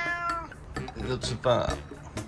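Orange-and-white domestic cat meowing to be fed. One long meow trails off about half a second in, and a shorter meow follows about a second and a half in.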